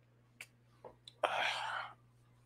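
A few small clicks, then a man's breathy exhale of under a second after swallowing a drink.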